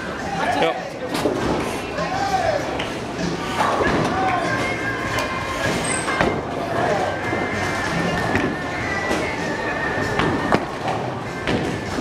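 Bowling alley din: many people chattering over background music, broken by a few sharp knocks of balls and pins.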